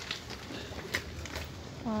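Handling noise from a glossy plastic pencil case being held and turned in the hand: a few light clicks and rustles over a low background hum, with a woman saying "voilà" at the end.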